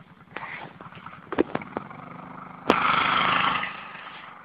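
Sport quad ATV engine idling with a few clicks, then about two-thirds of the way in a sudden loud rev as the quad pulls away in the snow, holding for about a second before easing off.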